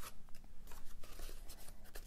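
Scissors and stiff black cardstock being handled: a light snip near the start, then soft rustling and light taps as the trimmed box-lid piece is moved about.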